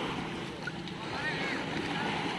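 Shallow lake water sloshing and small waves washing in at the shore around a person wading knee-deep, a steady splashy wash of water.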